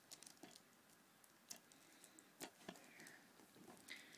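Faint, scattered clicks and light scratches of a tool and fingers working at the shrink wrap of a plastic DVD case, with a few sharper ticks among them.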